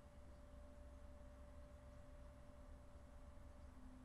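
Near silence: faint room tone with a thin, steady hum.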